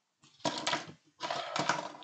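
Plastic clip-brick parts of a model sports car clicking and rattling as it is touched and pieces come loose onto the table, in two short bursts about half a second and a second in. The model falls apart at the slightest touch, its bumper held only by two loose connector pins.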